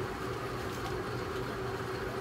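Steady low background hum with a faint held tone underneath.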